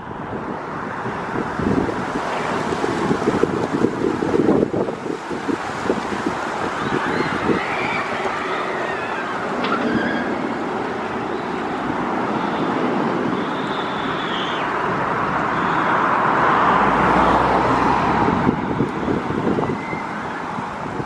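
Steady outdoor rumble and hiss, swelling to its loudest about sixteen seconds in.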